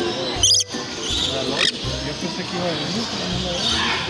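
A rainbow lorikeet gives a short, shrill screech about half a second in, then a fainter, thinner call about a second later, over a background of hall chatter.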